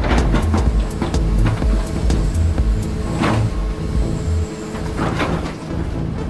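Heavy construction machinery working, with three loud hissing bursts: one at the start, one about three seconds in and one about five seconds in. These sit under background music with a pulsing low bass that stops about two-thirds of the way through.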